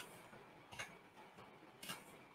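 Near silence with two faint computer mouse clicks, about a second apart.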